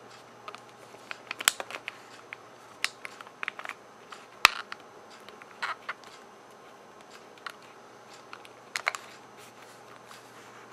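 Light clicks, taps and scrapes of a 1.8-inch laptop hard drive being handled and slid into its drive bay. The sharpest knock comes about four and a half seconds in, and there are only a few small clicks in the second half.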